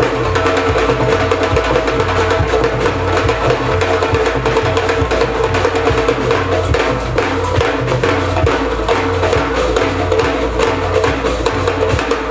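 Live band playing a percussion-driven groove: drum kit and hand percussion with sharp woodblock-like strikes over a bass line, heard loud through the stage PA.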